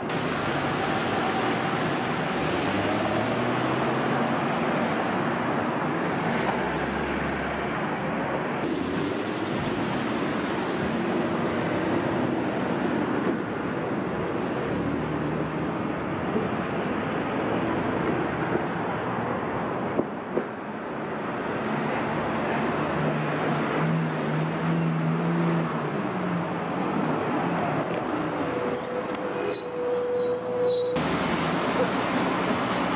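A SEPTA transit bus running and pulling past close by, over steady street traffic noise. A steadier engine hum stands out for a few seconds about three quarters of the way through.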